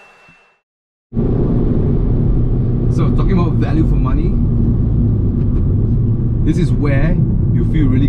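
Renault Mégane RS 280 Cup heard from inside the cabin at highway speed: a steady engine and road rumble that starts suddenly about a second in, after the tail of a music sting and a moment of silence.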